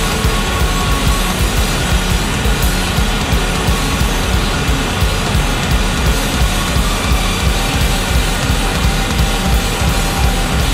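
Loud, dense improvised rock played by a trio: a thick, distorted wash of sound over fast, busy drumming, with no let-up.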